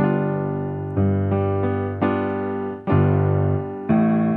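Piano playing a G seventh chord, G in the bass with G, B, D and F above, struck and held, then re-struck about once a second. Near the end the bass moves up to A.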